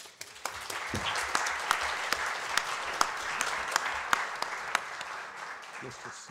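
Audience applauding: dense clapping that builds over the first second and tapers off near the end.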